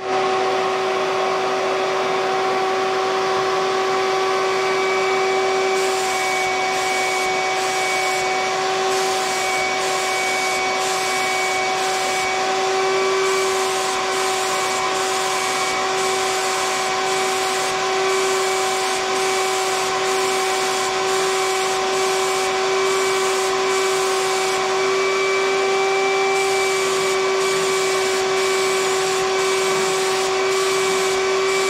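A spray gun's motor-driven air supply running steadily with a constant hum. The gun hisses on and off in short passes as dye is sprayed onto a guitar body.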